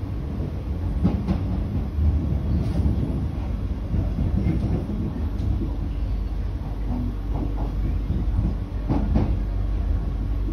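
Kawasaki–CSR Qingdao Sifang C151B metro train heard from inside the car while running at speed: a steady low rumble of wheels on rail, with a few sharp clacks about a second in, at two seconds and near nine seconds.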